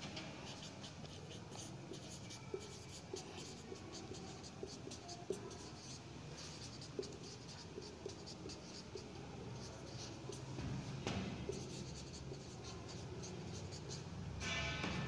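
Felt-tip marker writing on a whiteboard: a steady run of short, scratchy strokes and light squeaks as words are written out.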